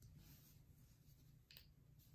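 Near silence: room tone, with one faint click about one and a half seconds in as small plastic Lego minifigure parts are handled.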